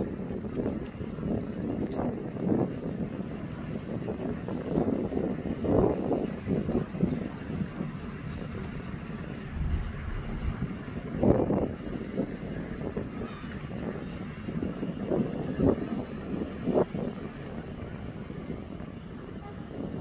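Wind buffeting the microphone over a steady low rumble of open-air harbour ambience, in irregular gusts.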